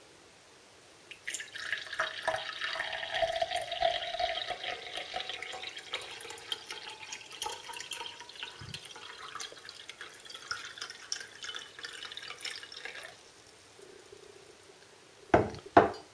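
Cold water poured from a glass measuring jug into a tall drinking glass: a splashing stream that runs for about eleven seconds and then stops. Near the end come two brief, louder sounds.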